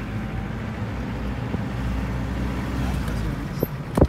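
Steady low rumble of a car driving, heard from inside the cabin, with faint voices over it. A sharp click comes at the very end.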